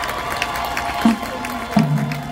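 High school marching band playing on the field over crowd cheering and applause; low brass notes enter sharply about a second in and again near the end.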